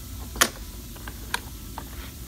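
Steel bar clamps being set and tightened on a plywood guide: a few sharp metal clicks and knocks, the loudest about half a second in, over a low steady hum.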